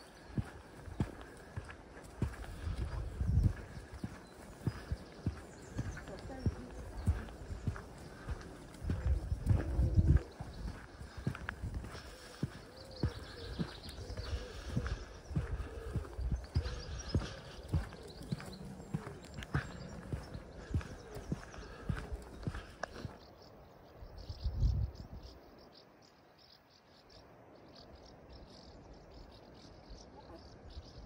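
Horse's hooves clip-clopping at a walk on a sandy track, a steady beat of about one to two steps a second. A few louder low rumbles break in, the loudest about ten seconds in. After about 23 seconds the sound turns quieter.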